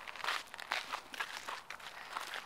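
Footsteps crunching on dry, sandy desert ground, an irregular run of scuffs and crunches.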